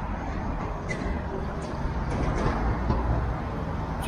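Outdoor urban background noise: a steady low rumble of traffic that swells a little around the middle, with a few faint clicks.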